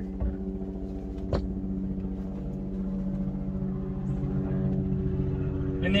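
A steady mechanical hum, like a motor running nearby, holding several even tones without change, with a single short knock about a second and a half in.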